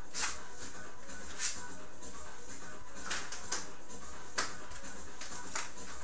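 Quiet background music, with a few brief soft clicks and rustles as a resistance band is handled and a person shifts on an exercise mat.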